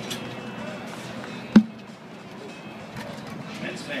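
A single sharp knock of a red plastic tee-ball bat hitting the ball off a batting tee, about one and a half seconds in.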